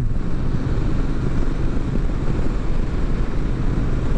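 Triumph Street Twin 900 cruising at highway speed, heard from the rider's seat: a steady, even rush of wind with engine and road noise underneath.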